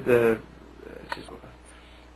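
A man's voice ends a phrase, then a pause with faint low room noise and a single short click about a second in.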